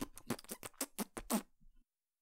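Vocal beatboxing: a quick run of percussive mouth clicks and hissing snare sounds, which stops abruptly about one and a half seconds in.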